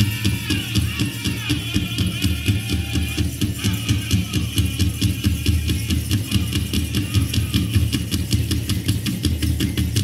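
Powwow drum group performing a fast Southern-style fancy dance song: a big drum struck in a steady fast beat, with high-pitched singing strongest in the first few seconds.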